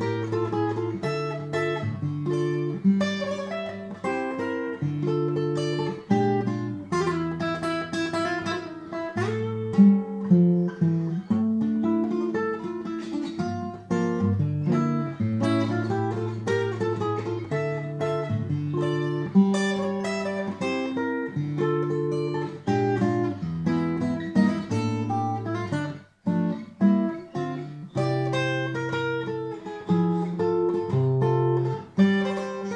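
Acoustic guitar played fingerstyle: picked melody notes over a moving bass line, with a brief break about 26 seconds in.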